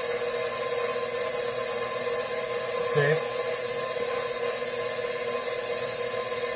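Electric stand mixer running at a steady speed with a constant motor hum, mixing sourdough bread dough as flour is added.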